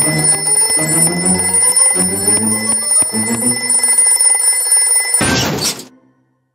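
A cartoon alarm clock ringing over a slow, low melody of stepping notes, ending in a short whoosh about five seconds in.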